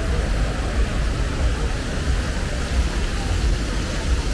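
Steady city street noise with a heavy, uneven low rumble and no clear single event.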